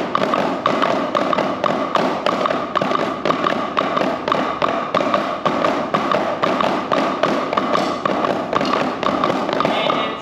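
Drumsticks on practice pads, several players striking together in a steady, rhythmic run of double strokes (two strokes per hand), a double-beat warm-up groove.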